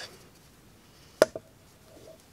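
A single sharp tap about a second in, then a fainter one, as the knife's box and drawstring pouch are handled on a tabletop; otherwise quiet.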